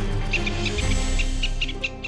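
Background music with a quick, irregular run of about ten short, high chirping animal calls, starting about a third of a second in.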